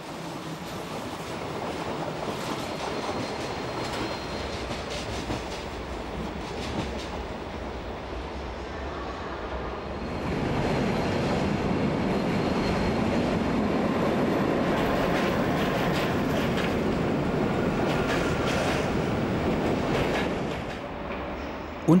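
Locomotive-hauled passenger trains rolling over a steel truss railway bridge: a steady rumble of wheels on rails with some clatter, growing louder about ten seconds in as coaches pass close by.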